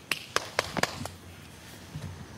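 About five sharp clicks or taps in quick succession over the first second, then a faint stretch.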